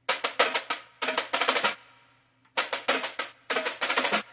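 Sampled pipe-band snare drum loop playing: rapid runs of crisp strokes and short rolls that break off for about half a second in the middle, then start again.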